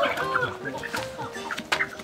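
A chicken clucking, with a sharp click near the end.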